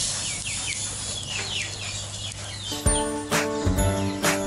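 Birds chirping in short falling notes, several a second. Near the end a bright music jingle with plucked notes starts and drowns them out.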